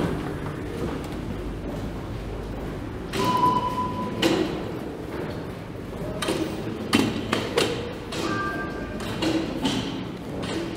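Electronic beeps from subway fare-gate card readers in a tiled station concourse: one steady beep about three seconds in and a two-tone beep near the end, over station hubbub with several sharp thuds.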